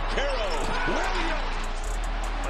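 Televised college basketball game sound: arena crowd noise with a basketball bouncing on the hardwood, over low background music.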